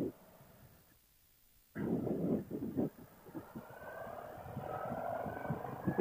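Harley-Davidson Street Glide Special's V-twin engine pulling away with wind noise, its pitch rising steadily as the bike accelerates. The sound is almost absent for the first second and a half before the engine comes in.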